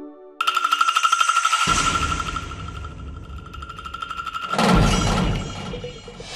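Dramatic TV-serial background score with no dialogue. A shimmering, rapidly pulsing high tremolo over a held tone starts suddenly about half a second in, low drums join, and a heavy low drum swell hits near five seconds.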